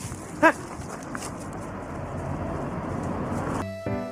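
A dog barks once, short and loud, about half a second in, during play. A steady rushing noise follows.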